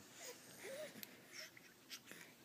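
Faint soft coos and breathing from a young infant: a short rising-then-falling coo about half a second in and a smaller one later.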